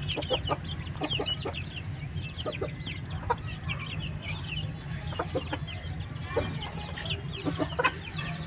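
A flock of budgerigars chattering in many short, high chirps while feeding, with hens clucking among them, over a steady low hum.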